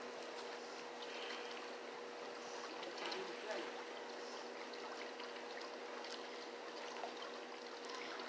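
Faint, steady background hiss with a low, even hum running under it, and a few soft, brief sounds about three seconds in.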